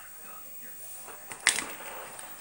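A single sharp click of something hard knocking on the work table about one and a half seconds in, over faint television talk in the background.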